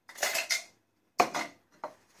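Clear plastic blender cups, one with ice in it, knocking and clattering as they are handled and set down on a kitchen worktop. There is a quick double clatter, a break, then a louder knock with a rattle and one last short knock.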